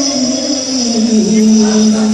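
Men singing an Onamkali folk song, holding one long note that slides slowly down and then stays level.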